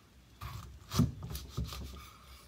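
Kitchen knife sawing through a chunk of pineapple and knocking down on a wooden cutting board: a few rasping strokes starting about half a second in, with the loudest knock about a second in.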